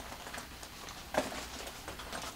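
Quiet handling noise of a fabric cosmetic train case being turned over, with one short, louder rustle a little over a second in.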